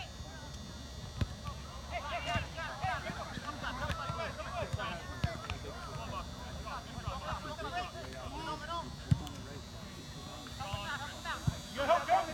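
Players shouting and calling to one another across an outdoor soccer pitch, several voices overlapping. A few sharp knocks of the ball being kicked cut through, the loudest about nine seconds in.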